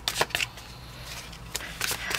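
A deck of tarot cards being shuffled by hand: a few quick card flicks and rustles at the start, quieter in the middle, then more flicks near the end.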